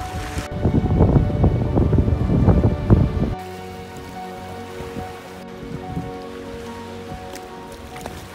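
Sea water splashing and sloshing against concrete seawall steps close to the microphone, a loud crackling wash that cuts off suddenly a little over three seconds in. Background music with held tones plays throughout.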